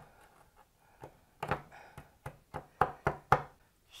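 A fist pounding a plaster dig-kit block against a wooden tabletop to break it open: about eight sharp knocks over two seconds, starting about a second and a half in.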